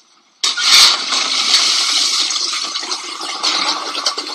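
A toilet flushing: a sudden rush of water starts about half a second in with a thump, then a steady gush that slowly fades.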